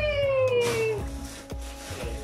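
A toddler's long, slowly falling squeal lasting about a second, over background music.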